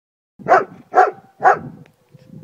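A dog barking three times, evenly, about half a second apart.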